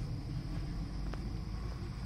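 Wind buffeting a handheld camera's microphone: a steady, fluttering low rumble with a faint hiss.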